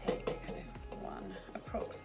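A knock of hands against a stainless steel mixing bowl just after the start, then soft handling of dough in the bowl, under background music and murmured speech.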